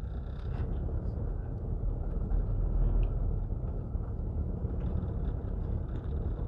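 Car running along a street, heard from inside the cabin: a steady low rumble of engine and tyres.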